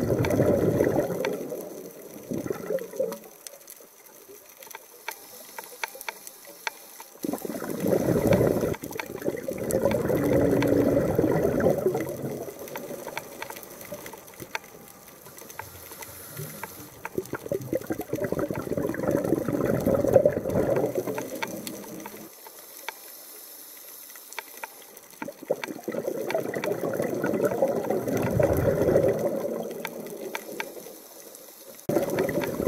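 Underwater bubbling and gurgling that comes in four swells of a few seconds each, about every nine seconds, in the rhythm of a diver's exhaled breaths. Faint scattered clicking runs between them.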